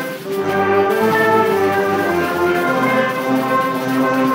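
High school concert band of brass, woodwinds and percussion, assembled as a virtual ensemble from separate home recordings, playing sustained chords.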